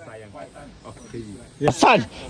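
Several people talking quietly. Near the end, one voice lets out a loud whooping call that glides in pitch.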